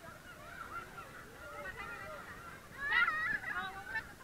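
Many children's voices squealing and shouting at once, high overlapping calls with a louder burst of shrieks about three seconds in.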